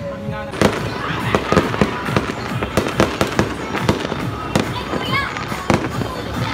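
Fireworks and firecrackers going off in a dense, overlapping run of bangs and pops. It thickens sharply about half a second in and keeps on without a break.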